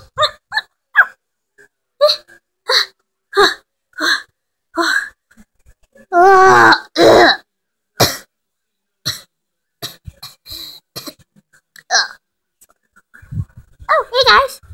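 A child's voice making a string of short, sharp vocal noises, about one or two a second, with two longer, wavering cries about six seconds in that are the loudest part: play noises voicing a toy pet.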